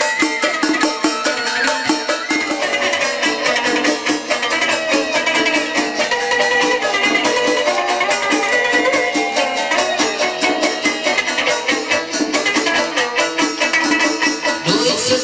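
Vietnamese chầu văn ritual music: a plucked moon lute (đàn nguyệt) over a fast, even percussion beat.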